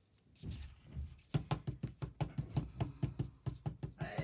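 Rapid, even knocking, about six knocks a second, starting a little over a second in after a near-silent moment.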